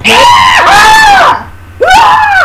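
A high-pitched voice screaming a drawn-out "what" for over a second, then a second loud scream starting near the end.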